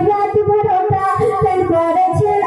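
A young woman singing a Bengali gazal into a microphone, amplified, over a quick, steady rhythmic beat.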